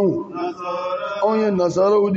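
A man chanting Quranic recitation in Arabic into a microphone, drawing out long held notes that bend in pitch at their ends.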